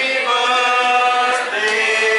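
A group of restaurant waiters singing a birthday song together, holding long sustained notes.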